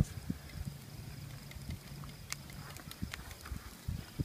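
A few faint, sharp clicks from a pocket multitool being handled against an egg, over a low, steady hum.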